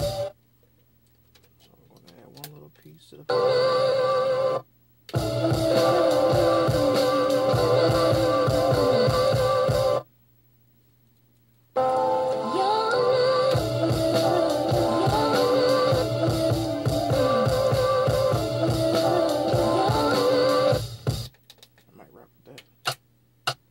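A sampled soul record with singing, guitar and drums played from a pad sampler, stopping and starting: a short snippet about three seconds in, then two longer runs of about five and nine seconds with silent gaps between, and a few faint clicks near the end.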